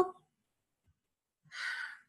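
A woman's short breathy sigh about one and a half seconds in, after a pause of near silence.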